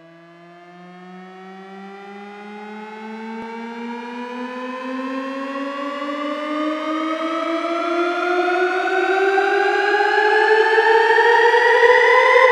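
Synthesizer riser opening an electronic dance remix: a single held synth tone slowly gliding upward in pitch and growing steadily louder, building toward the drop.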